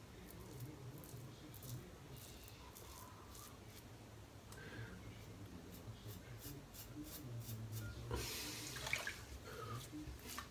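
Double-edge safety razor with a Polsilver blade scraping through lathered stubble in short, faint strokes. A louder rushing noise comes about eight seconds in.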